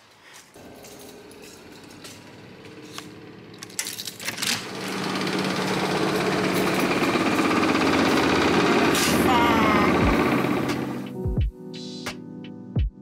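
Commercial Podab laundry machines in a tiled laundry room, running with a loud, steady rattling mechanical noise that builds up about four seconds in and dies down near the end.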